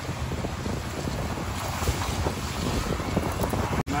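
Steady wind rushing over the microphone of a moving motorcycle, mostly a low rumble. The sound cuts out for an instant near the end.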